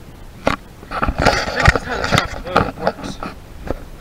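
Handling noise from a handheld camera: a string of sharp knocks and rubbing as it is moved about, with some brief indistinct murmuring.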